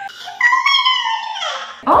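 A woman's long, high-pitched squeal of discomfort that falls slowly in pitch, drawn out by pulling hard on her tightly tied hair.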